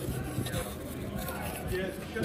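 Background chatter of voices at a moderate level, with no clear click or beep standing out.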